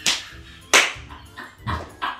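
A woman coughing three times, the second cough loudest and the third weaker, as the ginger in a homemade pumpkin spice latte burns her mouth and throat.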